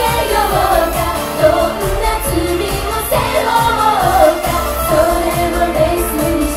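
Female pop group singing into handheld microphones over pop music with a steady, evenly repeating beat.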